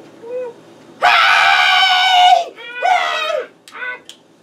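A woman's voice screaming loudly for about a second and a half, then letting out a shorter cry and a brief one near the end, after a few soft moans.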